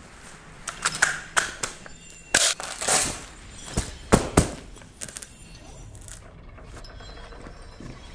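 A quick run of about ten sharp clicks, snaps and knocks, the loudest pair about four seconds in. They are sound effects for an intro montage of an airsoft player handling his rifle and tactical gear. A low, quieter background follows for the last few seconds.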